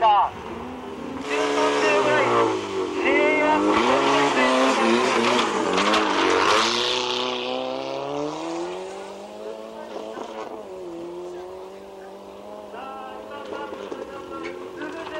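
A modified dirt-trial competition car driven hard on a gravel course: the engine revs rise and drop with throttle and gear changes, with a hiss of tyres and gravel as it passes close. After about eight seconds it fades into a fainter, steadier engine note as it drives away.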